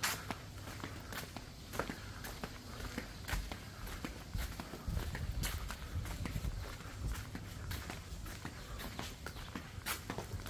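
Footsteps of someone walking along a concrete path: a run of light, uneven taps over a low background rumble.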